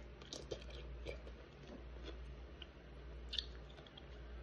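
Faint crunching and chewing of a bite of pickle, with a few soft, scattered clicks of the mouth working the bite.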